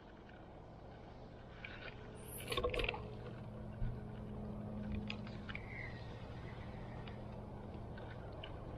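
Spinning reel being handled on the rod, a few sharp clicks about two and a half seconds in and again near four seconds, over a faint steady low hum.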